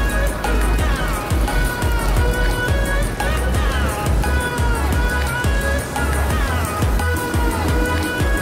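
Pop song playing as background music, with a steady heavy bass beat and sliding melodic lines above it.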